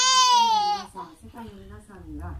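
A baby crying: one loud wail of about a second that falls slightly in pitch at its end, then quieter whimpering sounds.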